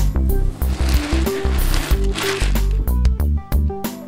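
Loose plastic perler beads rustling and clattering as a hand plunges into a bucket full of them and stirs, over background music. The rustle is strongest in the first two and a half seconds.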